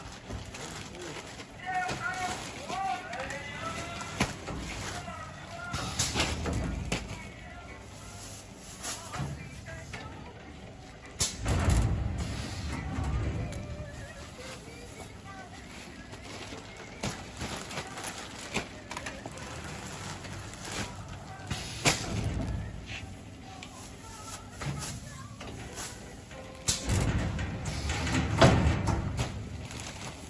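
Quilts and large plastic packing bags being handled: irregular rustling and soft thuds, loudest about a third of the way in and again near the end, with voices in the background.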